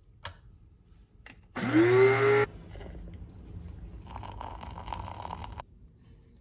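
Electric blade coffee grinder motor whirring up to speed in a short loud pulse of under a second, its whine rising and then holding, about a second and a half in. A quieter, softer rushing noise follows for about three seconds.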